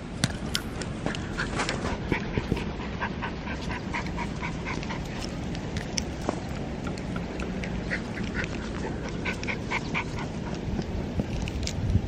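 A toy poodle playing with a ball on grass close to the microphone: irregular short clicks and rustles of its movement and breathing over a steady low rumble.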